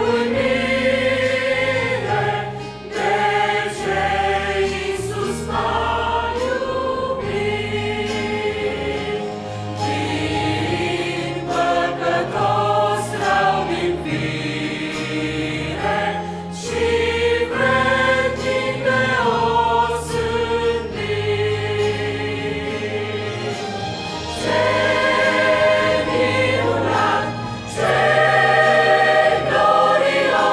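Mixed church choir of women's and men's voices singing a hymn in Romanian.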